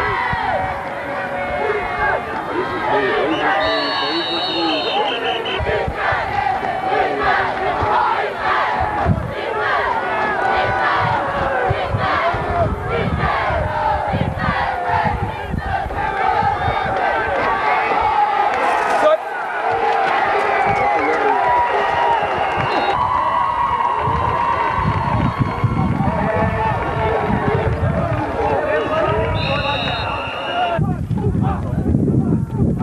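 Football crowd shouting and cheering, many voices overlapping at a steady level throughout.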